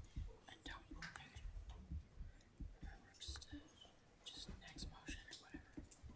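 Faint whispering and low murmured voices with scattered small clicks and knocks.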